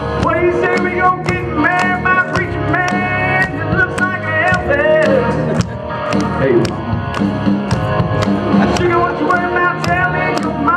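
Male singer performing a fast-paced country rock song live into a microphone over backing music, with a steady drum beat of about two strikes a second.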